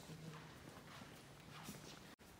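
Faint footsteps on a marble floor: a few soft taps over quiet room tone.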